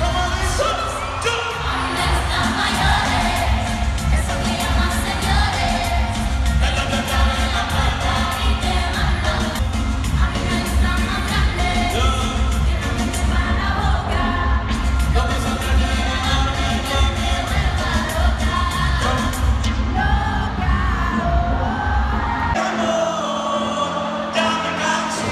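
Live concert music over an arena sound system, recorded from the stands: a singer over a heavy bass beat. The bass drops out near the end.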